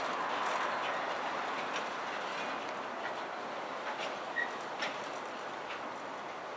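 Container wagons of a freight train rolling by on the far track: a steady rumble of wheels on rail with occasional sharp clicks, slowly fading as the train moves away. A short high squeak sounds a little after four seconds in.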